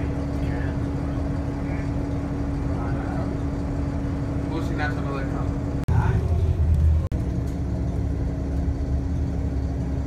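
Interior noise of a moving transit vehicle: a steady hum with a low rumble and faint passenger voices. About six seconds in the sound breaks off sharply, and a louder low rumble follows for about a second before the steady hum returns.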